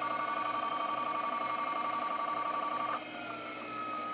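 Old hard drive on an Amiga 500's Dataflyer 500 controller running with a steady high whine that cuts off about three seconds in, leaving a faint, slightly falling tone. The noise is taken as a bad sign of the drive's condition.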